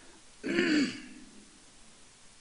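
A man clearing his throat once, briefly, about half a second in, as his voice grows creaky with emotion.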